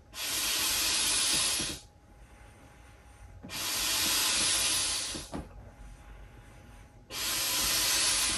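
Air hissing into a large inflatable dinosaur sprinkler in three long pushes of nearly two seconds each, with quieter pauses of about the same length between them.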